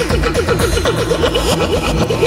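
Electronic background music with a steady, fast beat.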